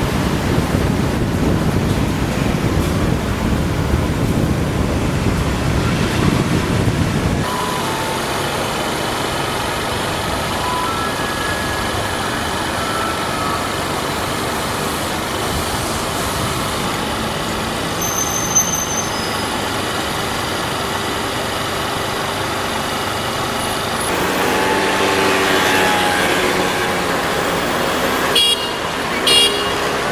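Road traffic noise: a heavy low rumble of vehicles for the first seven seconds or so that drops away abruptly, then a steadier background of traffic with a couple of short high-pitched tones near the end.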